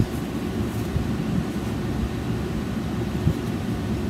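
Steady low background rumble, with a couple of light knocks from an iPad case being handled, once at the start and again about three seconds in.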